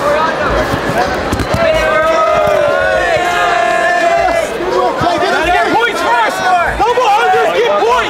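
Coaches and spectators shouting over one another around a grappling match, with one voice holding a long, steady yell through the middle. A few dull thuds, from bodies hitting the mat, come through the shouting.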